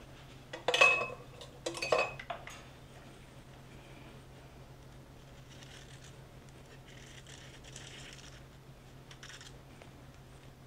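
Two clinks of a metal offset spatula against a stainless steel mixing bowl, about a second apart, each ringing briefly. Faint scraping follows as the spatula spreads buttercream on the cake's sides.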